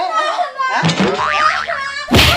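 A cartoon-style 'boing' comedy sound effect, its pitch wobbling quickly up and down in the second half, with a person's voice early on.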